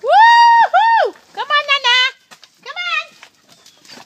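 Labrador puppies whining: two long high-pitched whines in the first second, then a warbling whine and a shorter falling one.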